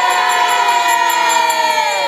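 A protest crowd chanting, many voices holding one long drawn-out shouted note together, the pitch sinking slightly toward the end.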